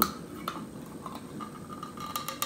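A few light, scattered metal ticks and clicks as fingers work at the pull tab on the top of a one-litre beer can.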